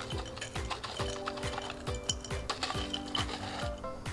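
Crushed ice being spooned from a plastic cup into a glass jar, with scraping and clicking, over background music with sustained chords and a steady beat.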